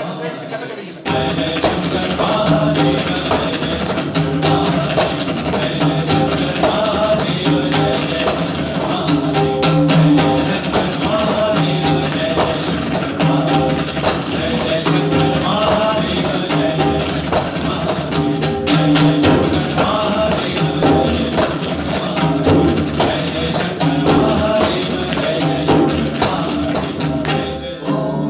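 An ensemble of tabla played together, a dense run of fast strokes that comes in about a second in, over a repeating sung melody (nagma) and harmonium. The drums stop near the end, leaving the voices.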